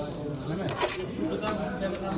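People talking in the background, quieter than the talk around it, with a couple of sharp clicks just under a second in.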